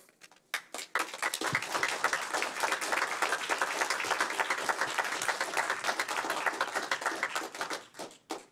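Audience applauding: many people clapping, starting about half a second in and dying away near the end.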